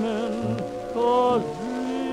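Big band swing from a 1945 shellac 78 rpm record: the orchestra holds sustained chords with vibrato, changing chord about once a second, under the crackle and hiss of the record's surface.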